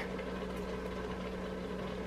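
A steady low hum with a faint even hiss, unchanging throughout, with no knocks or clatter standing out.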